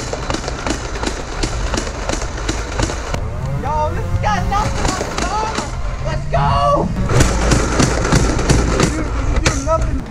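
A Nerf blaster firing foam darts in quick succession, a dense, irregular run of sharp pops and clicks, with a few short yells in the middle.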